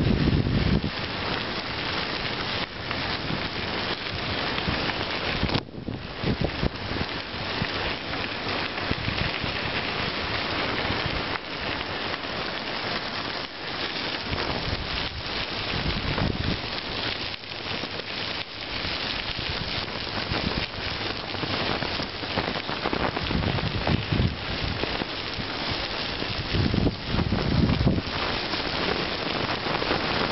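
Bicycle tyres rolling over a gravel trail: a steady crunching hiss, with a few low rumbles of wind on the microphone.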